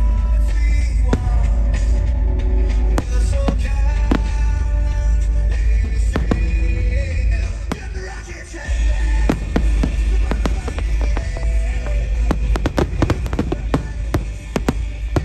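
Aerial fireworks bursting with sharp bangs under music that plays throughout. The bangs come in quick runs that grow denser near the end.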